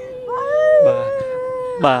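A person wailing: one long, drawn-out cry held at a steady pitch, lifting briefly about half a second in, with a short spoken word near the end.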